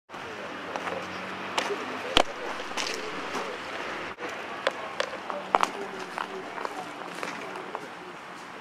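Indistinct voices in the background, with scattered sharp clicks and knocks, the loudest a little over two seconds in.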